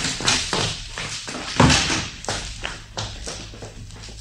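Radio-drama sound effect of quick footsteps, a run of taps, about three or four a second, with one heavier thump about a second and a half in, growing fainter as they go away.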